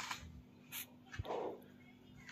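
Steel spoon scraping and knocking against a metal kadai as chopped vegetables are stir-fried: a few short separate scrapes and a knock, the loudest a brief scrape about a second and a half in.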